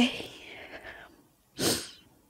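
A woman's breathing close to the microphone: a short voiced exhale at the start that trails off into breath for about a second, then a sharp sniff near the end.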